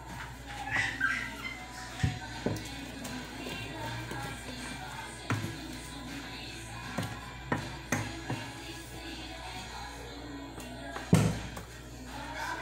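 Background music, with a wooden spoon knocking repeatedly against a steel pot as bread dough is mixed; the loudest knock comes near the end.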